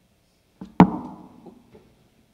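A single sharp knock about a second in, with a brief ringing tail, from musical gear being handled while it is packed away.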